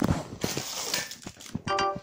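Plastic carrier bag rustling and crinkling as it is pulled about and handled, with a few knocks. Near the end comes a short, steady beep-like tone.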